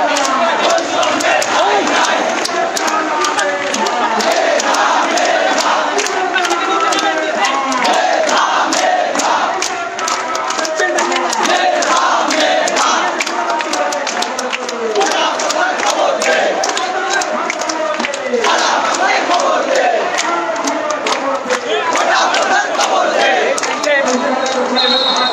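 Large crowd of marching protesters shouting slogans together, many voices overlapping, with frequent sharp clicks over the voices.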